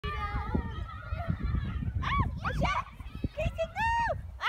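Wind rumbling on the phone's microphone, with three short high-pitched calls that rise and fall in pitch. The last and longest call comes near the end.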